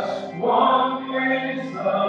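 A congregation singing a hymn together, many voices holding sustained notes.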